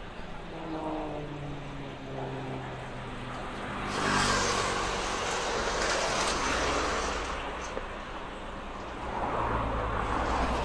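KT-1B turboprop trainer aircraft flying past, the pitch of its engine and propeller falling over the first few seconds. From about four seconds in a louder rushing roar takes over, eases off, then swells again near the end.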